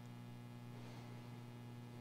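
A faint, steady low electrical hum with room tone, typical of mains hum in a sound system.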